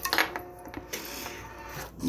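A few light metallic clinks and knocks, the sharpest in a quick cluster just after the start.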